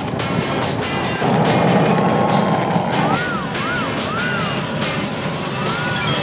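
Background music with a steady beat; about halfway through, a wavering synth line comes in with repeated rising-and-falling pitch swoops.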